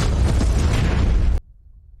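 Bomb blast in a movie soundtrack: a loud, dense roar with deep rumble that cuts off suddenly about one and a half seconds in.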